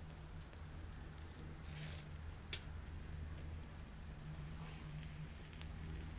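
Pine-twig fire burning in a small wood-gas (TLUD) camp stove, faintly crackling, with a sharp pop about halfway through and another near the end, over a low steady hum.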